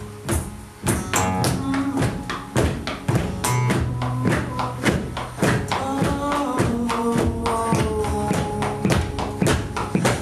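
Live acoustic band playing an instrumental intro: acoustic guitar chords over a steady beat struck on a cajon.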